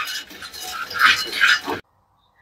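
Wooden spatula stirring and scraping almonds and other nuts as they dry-roast in a stainless steel pan, in a run of short scraping strokes that cuts off suddenly near the end.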